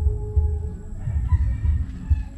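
A rooster crowing faintly over a steady low rumble.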